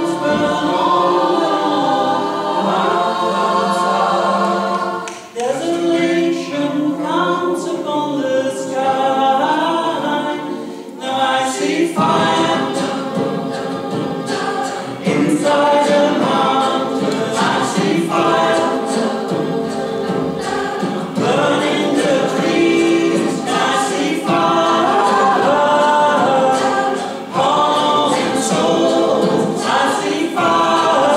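Mixed choir of men's and women's voices singing a cappella in several parts, in long phrases with brief breaks near 5 s, 11 s and 27 s.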